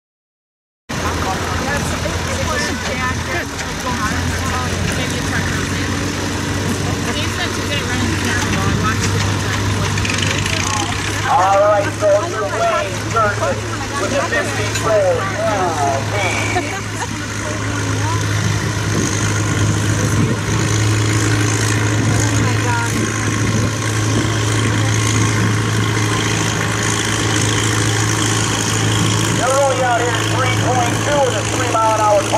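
Farm tractor engine running steadily under load as it drags a weight-transfer sled at walking pace in a 3 mph tractor-pull class, a low, even drone that grows a little louder partway through. Voices come and go over it.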